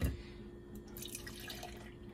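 Skim milk poured from a plastic jug into a plastic blender jar, heard as a faint splashing trickle. There is a light knock at the very start.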